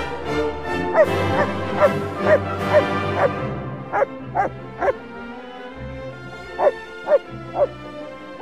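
A German Shepherd giving high, yelping barks in short runs, about two a second, over background music.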